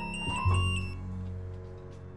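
Background music: a soft keyboard chord comes in about half a second in and slowly fades away.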